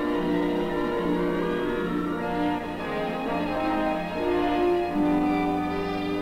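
Orchestral film score with bowed strings (violins and cellos) playing sustained notes that change every second or so.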